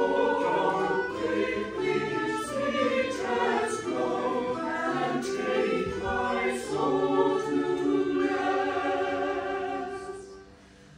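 Church choir singing, several voices sounding different notes together in one continuous phrase.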